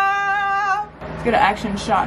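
A woman's voice holding one long, high sung note in excitement, ending a little under a second in, followed by a few spoken syllables.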